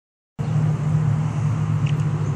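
A steady low mechanical hum, starting a moment in after a brief silence.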